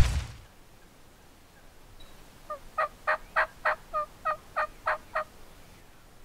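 Merriam's wild turkey yelping: a run of about ten short yelps, three or four a second, each breaking from a higher note down to a lower one, starting about two and a half seconds in.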